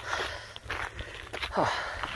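Footsteps on a gravelly dirt trail, several steps in a row, walking uphill.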